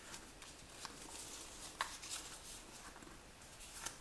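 Faint rustling and crinkling of paper being folded and creased by hand, with scattered soft clicks and a sharper crackle just under two seconds in.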